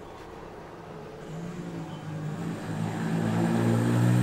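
A motor vehicle engine running at a steady pitch, growing steadily louder as it approaches.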